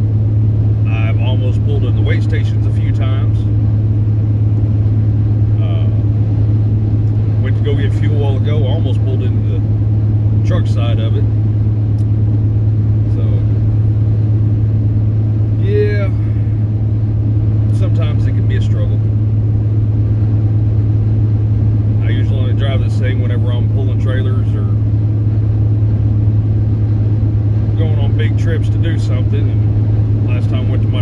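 Steady low drone of a truck's engine and road noise heard from inside the cab while driving, holding an even level throughout.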